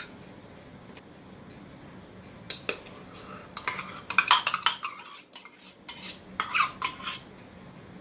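Metal spoon scraping and clinking against a stainless steel measuring cup as mayonnaise is scraped out of it into a glass bowl. A run of short clinks and scrapes starts about two and a half seconds in and is loudest around the middle.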